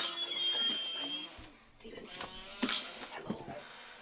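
A REM pod's electronic alarm tone sounding steadily for about a second, followed by startled exclamations and scuffling.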